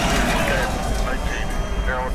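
Steady low rumble of rocket-launch audio with faint, indistinct voices over it.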